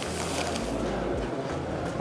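Steady background noise of a large, busy hall, even throughout, with no distinct knocks or clicks.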